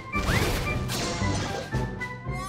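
Cartoon sound effects over light background music: a sudden crash-like hit right at the start, a quick rising swish about half a second in, then a brief hissing rush.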